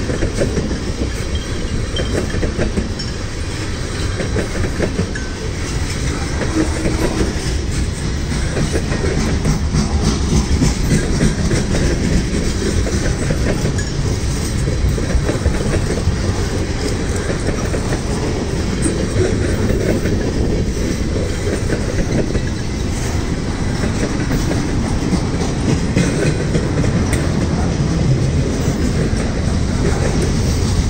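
Freight train's tank cars, hopper and boxcars rolling past close by: a steady loud rumble of wheels on rail with a dense run of clicks over the joints.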